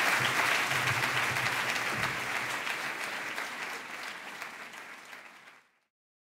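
Audience applauding after a talk, the clapping fading steadily away to silence near the end.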